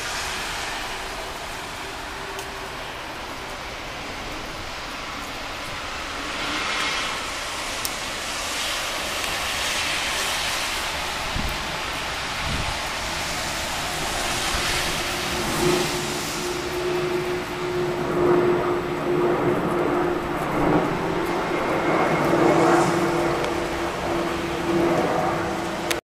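Vehicle sounds: a noisy rush that swells and fades a few times, then from about halfway a steady engine-like hum with a held low tone under rising and falling noise.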